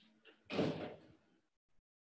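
A single short clunk, like a bump or a door, about half a second in, dying away within a second, with faint rustling just before it.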